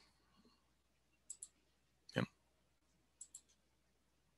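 Faint small clicks in a quiet room: a quick high pair, a single louder click about two seconds in, then another quick high pair.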